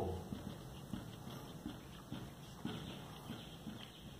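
Blue dry-erase marker writing on a whiteboard: faint, irregular taps and scuffs as the tip strokes out letters, a few times a second.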